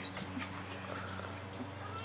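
Faint strumming on a small acoustic guitar in a pause between sung lines, over a steady low hum.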